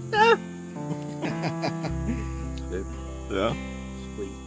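Acoustic guitar music with a steady bass line, over which a man gives a short, wavering wordless exclamation right at the start and another brief one after about three seconds as he bites into hot roasted corn.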